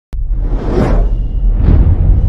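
Intro sound effect: two whooshes about a second apart over a steady deep rumble, starting abruptly just after the opening.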